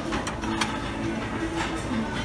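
Handling noise as a glass plate is picked up and moved on a shelf: a steady rumble with a few sharp knocks and clicks, over quiet background music.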